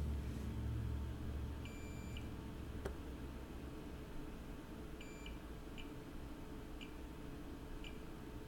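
Digital multimeter in diode mode giving faint high beeps as its probes touch the connector pins of an iPhone 7 Plus logic board: a half-second beep about two seconds in, another around five seconds, then a few short chirps. A single sharp click near three seconds.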